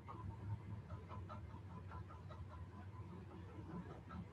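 Faint, short, irregular bird-like calls, like clucking, over a steady low background hum.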